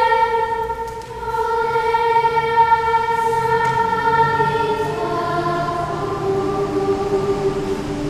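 Children's choir singing sacred music in long held notes, with a short break about a second in and a move to lower notes about five seconds in.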